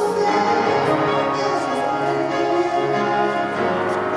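A worship team of several singers singing a song together in harmony, with steady sustained chords.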